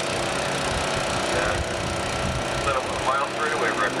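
Vintage unlimited hydroplane's Rolls-Royce piston aircraft engine running at speed, heard from a distance as a steady drone. Faint voices sound over it partway through.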